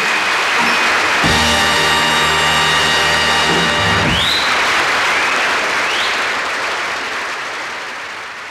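Audience applauding as a band with brass holds the final chord of a song. The chord cuts off about four seconds in, while the applause carries on and slowly fades.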